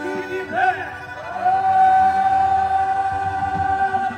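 Traditional Moroccan wedding troupe music: men singing together in short rising-and-falling phrases, then one long held note from about a second and a half in.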